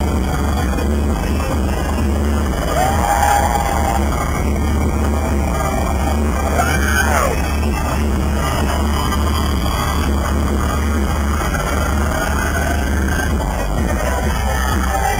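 Live arena concert music picked up by a camcorder in the crowd, with a steady heavy bass under a dense wash of sound. A few rising and falling cries from the audience stand out about three and seven seconds in.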